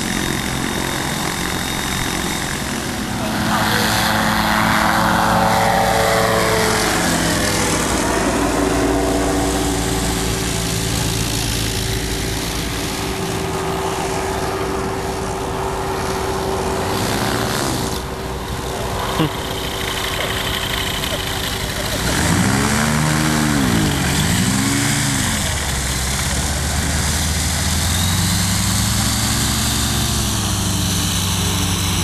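Microlight aircraft propeller engines running, one after another. The pitch sweeps down as one passes about four seconds in, and dips and climbs again a little after twenty seconds in.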